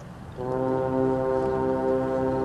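Marching band brass and winds come in suddenly about half a second in on a loud chord, held steady: the opening chord of the show.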